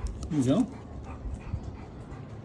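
Golden retriever making a brief whimpering sound over low background noise, next to a short spoken phrase.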